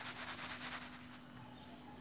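Sand swishing in a plastic plate as it is shaken to smooth the surface and erase a letter traced in it, a faint rapid grainy rustle that fades about a second in. A steady low hum runs underneath.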